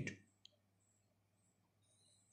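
Near silence: faint room tone, with one faint click about half a second in.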